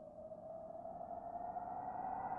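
Intro sound effect: an eerie pitched drone with several overtones, gliding slowly upward and swelling steadily louder.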